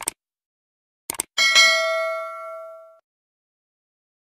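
Sound-effect clicks, one at the start and a quick pair about a second in, then a bright notification-bell ding that rings for about a second and a half and dies away.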